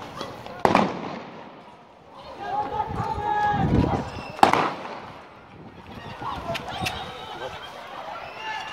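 Two loud shotgun blasts firing birdshot, about four seconds apart, each followed by an echo, with people shouting in between.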